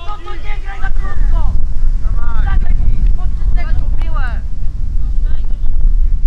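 Wind buffeting the microphone in a steady low rumble, with shouted calls from people on the football pitch that die away about four and a half seconds in.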